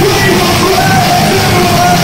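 A live rock band playing loud: drum kit and electric guitar, with shouted vocals from the drummer singing into his microphone.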